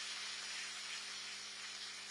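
Audience applauding in a hall, the clapping slowly dying away.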